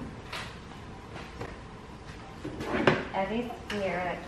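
Small knocks and clicks with some rustling as items are taken out of a car's door pocket and cabin. The sharpest knock comes near the end, followed by a few quiet spoken words.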